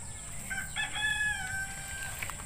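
A rooster crowing once, faintly: one drawn-out call that starts about half a second in, is held, and sinks slightly in pitch before it ends.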